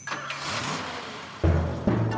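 Cartoon soundtrack: a rushing noise starts sharply and fades, then about one and a half seconds in, music enters with deep drum hits.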